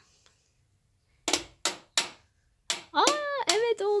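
A plastic toy hammer tapping four times on a plastic toy workbench, sharp short knocks over about a second and a half, followed by a small child's high-pitched voice near the end.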